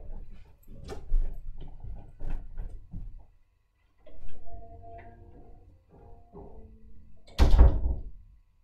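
Footsteps and small knocks of a person leaving the room, then a door shutting with a loud thud near the end.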